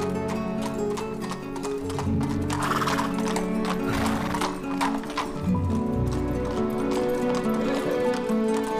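Background film music over a horse, with hoofbeats and a neigh about two and a half seconds in.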